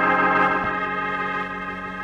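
Organ music bridge: a sustained chord held and slowly fading, marking a scene change in the radio drama.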